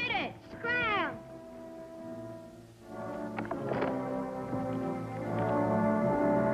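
A rough collie barking a couple of times in the first second. From about three seconds in, orchestral background music with held notes.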